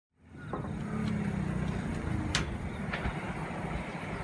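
Low steady rumble of a distant approaching JR Kyushu KiHa 183 series diesel railcar, fading in at the start, with two sharp clicks around the middle.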